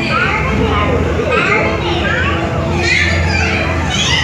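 Many high-pitched voices squealing and shrieking over one another, their cries sweeping up and down in pitch, over a steady low hum.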